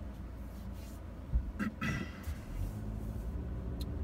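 Low, steady rumble of engine and road noise heard inside the cabin of a 2017 Toyota Corolla moving slowly. A short thump comes about a second and a half in, followed by a few brief sounds and a faint click near the end.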